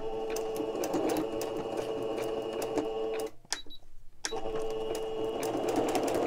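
Singer Stylist electronic sewing machine stitching through paper: a steady motor hum with rapid, even needle ticks. It stops for about a second just past the middle, then starts sewing again.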